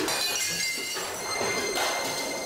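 A plate dropped onto the floor shattering.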